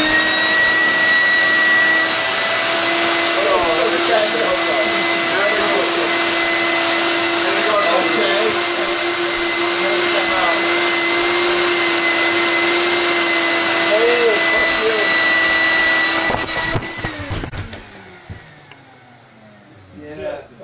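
A yellow canister wet/dry shop vacuum switched on: its motor spins up with a rising whine, then runs at a loud, steady high whine for about seventeen seconds. It is switched off, and the motor winds down amid a few knocks.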